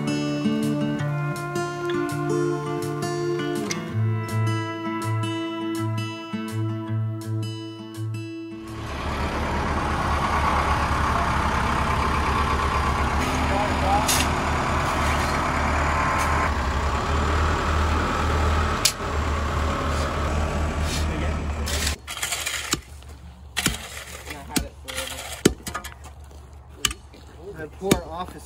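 Background music for the first eight seconds or so. It gives way to the diesel engine of a Case backhoe loader running steadily for about thirteen seconds. The engine stops and irregular knocks follow: hand tampers striking a gravel pad.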